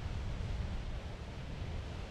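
Ocean surf: a steady low rumble of breaking waves with a faint hiss above it.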